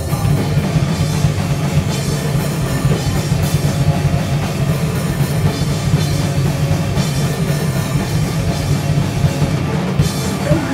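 A punk band playing live, with loud distorted guitars and bass over a drum kit and no vocals. The whole band plays at a steady, dense level.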